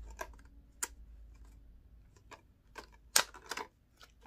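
Scattered clicks and taps of a packaged set of removable wall stickers being handled, with a cluster of sharper clicks near the end and the loudest just past three seconds in.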